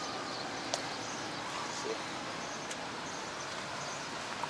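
Steady outdoor city ambience: an even hiss of distant traffic and open air, with a couple of faint clicks.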